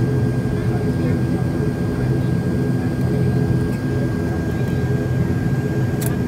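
Turboprop airliner's engines and propellers running at low power as the aircraft taxis, heard from inside the cabin. The sound is a steady low drone with a constant thin high whine above it.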